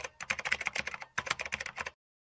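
Keyboard-typing sound effect: quick runs of sharp key clicks, several a second, with brief pauses between runs, cutting off abruptly near the end.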